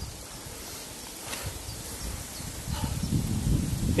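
Quiet outdoor ambience, then low, irregular rustling and buffeting noise that builds up in the last third.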